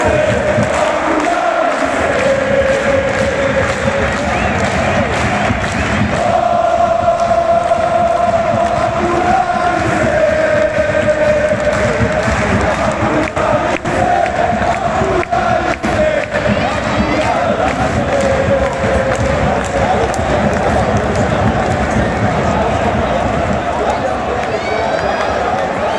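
Large football supporters' crowd singing a chant together, thousands of voices holding long melodic lines. A few sharp knocks come through about halfway through.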